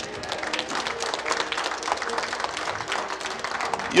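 Congregation applauding: many hands clapping in a steady, dense patter.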